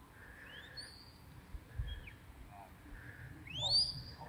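Shepherd's whistle commands to a working sheepdog: a rising whistle early on, a short falling one about halfway, and a louder rising whistle near the end that levels off and is held at the top.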